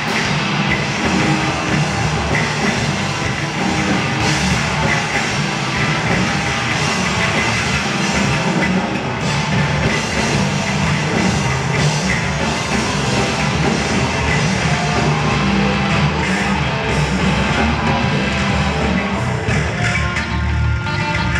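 Live rock band playing an instrumental passage on electric bass, electric guitar and drum kit, loud and continuous.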